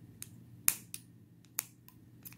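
Scissors snipping a strand of yarn: a few short, sharp clicks of the blades, the loudest about two-thirds of a second in.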